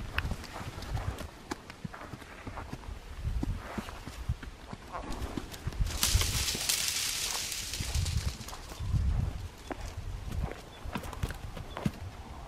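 A Morgan horse walking on dirt, its hoofbeats dull and irregular, with a rustling hiss for about two seconds midway.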